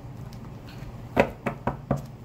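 Tarot cards being shuffled by hand: about four sharp card clicks in the second half.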